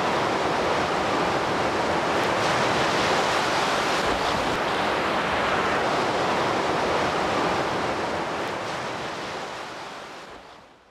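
Steady rush of sea surf, fading out toward the end.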